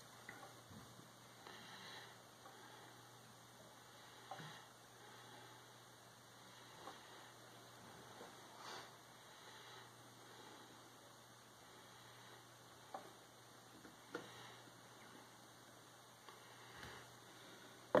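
Near silence: a steady low hum with a few faint, scattered clicks and taps while honey drains slowly from an upturned bottle into a glass jug. A slightly sharper knock comes at the very end as the bottle is set down.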